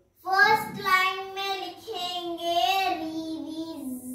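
A young girl's voice singing in long, drawn-out notes, starting about a quarter second in, with the pitch stepping lower toward the end.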